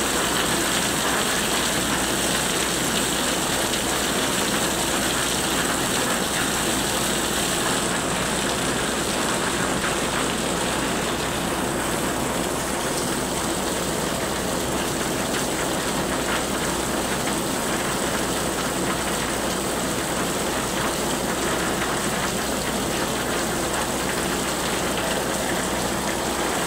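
Heavy rain falling steadily on a flooded street and an awning, with runoff pouring off the awning's edge.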